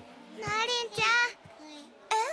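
A young girl's voice making two short, high-pitched, sing-song vocal sounds, the first about half a second in and the second about a second in.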